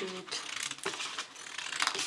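Scissors cutting a plastic folder: a run of sharp, irregular clicking snips as the blades close on the plastic sheet.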